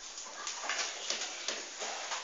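A sheet of paper rustling as it is held and moved, in a series of short scratchy strokes.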